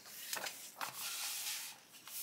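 A paper page of a softcover book being turned by hand: a couple of light ticks, then a longer rustling swish as the page goes over.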